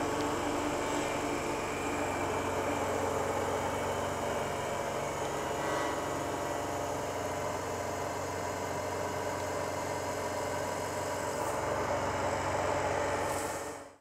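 CNC milling machine running, its spindle turning a milling cutter through a plastic block held in a vice: a steady machine hum with several constant tones. It fades out at the very end.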